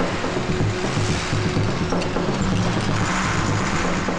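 Several motor vehicles, cars and a lorry, driving on a dirt track: a loud, dense engine rumble with a noisy hiss of tyres and dust over it.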